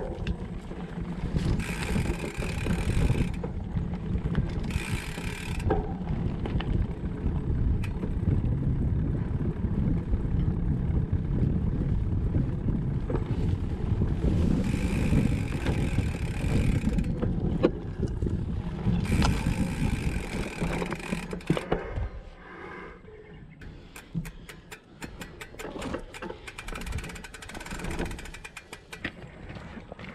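Hardtail mountain bike ridden on a dirt trail, heard from a frame-mounted action camera: a steady rumble of knobby tyres and frame rattle, with several short bursts of hiss as grass brushes past. About two-thirds of the way through the rumble drops away, leaving a quieter stretch of rapid ticks and clicks.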